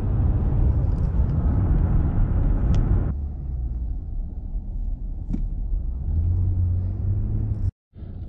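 Road and engine noise inside a moving car's cabin, a steady rumble at highway speed. About three seconds in it drops sharply to a quieter low rumble of slow driving. It cuts out for a moment near the end.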